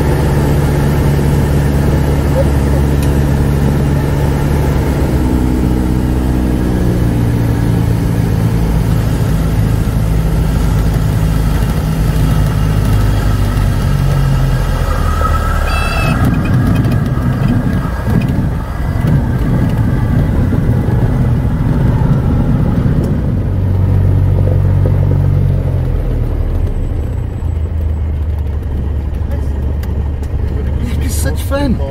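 Cessna 170B's six-cylinder Continental engine and propeller heard from inside the cockpit during a landing: the engine note drops as power is pulled back on final approach, a rougher rumble follows from rolling on a grass strip after touchdown about halfway through, and the engine picks up briefly, then settles while taxiing.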